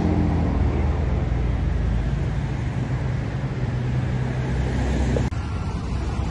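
Steady car road noise: a low engine hum under a rushing hiss, changing abruptly about five seconds in.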